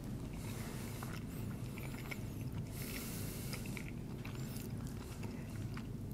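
A man quietly chewing a mouthful of quiche, over a low steady room hum.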